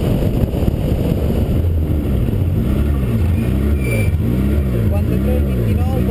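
Citroën Saxo VTS 16V's 1.6-litre sixteen-valve four-cylinder engine heard from on board, first running with heavy road and wind rumble, then from about two seconds in rising and falling in pitch over and over, about once a second, as the revs swing up and down at low speed.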